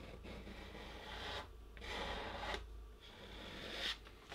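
The edge of a plastic card scraped across watercolour paper, lifting paint to make texture. It sounds as three faint, scratchy strokes with short pauses between them.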